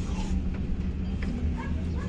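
Inside the cab of a moving Yutong Nova coach: a steady low engine and road rumble, with a few short high chirps or yelps past the middle.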